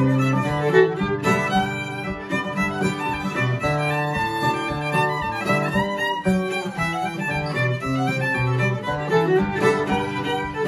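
A Kentucky fiddle tune played on fiddle and acoustic guitar: the fiddle carries the bowed melody while the guitar plays rhythm and bass notes underneath.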